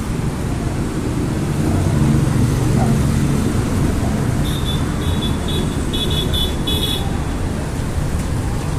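Steady road traffic rumble that swells as a vehicle passes around two seconds in, then a high-pitched horn tooting in a run of short beeps from about four and a half to seven seconds.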